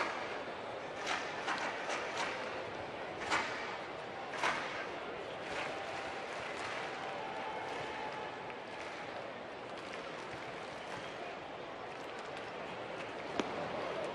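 Ballpark crowd ambience: a steady murmur from the stands with a few scattered claps and shouts early on, and a single sharp crack near the end as a pitch is swung at.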